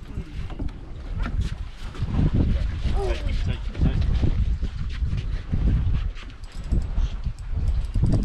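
Wind buffeting the microphone in an uneven low rumble, with faint voices of people talking.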